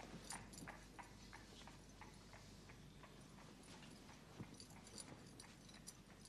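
Very quiet background with faint, irregular clicks or taps, a few each second.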